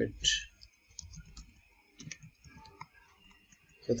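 Computer keyboard typing: a run of quiet, irregular key clicks between about one and three seconds in.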